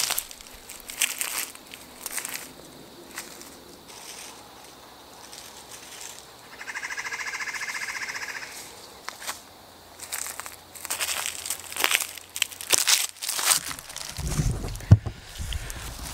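Footsteps crunching through dry leaf litter and dead stalks, faint as the walker moves away, then louder and denser near the end as he comes back toward the microphone. In the middle, a high buzzy trill lasts about two seconds.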